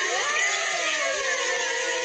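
Many young voices singing together over a backing track in a Smule group karaoke recording, played back through a tablet's speaker and picked up by a second device.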